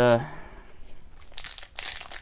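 A trading-card pack's wrapper crinkling as it is torn open by hand, in a run of irregular rustles starting about halfway through.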